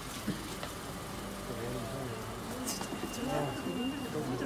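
Indistinct chatter of several people talking at a distance, with no clear words, over a low background hum. A faint steady high tone comes in about halfway through.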